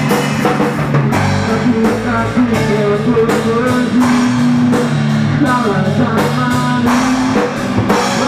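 A rock band playing live, with electric guitars over a steady drum kit beat.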